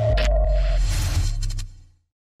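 Cinematic logo-reveal sting: a short hit near the start, then a deep low rumble and a hissing swell under a held tone that stops about a second in. Everything fades out near the end.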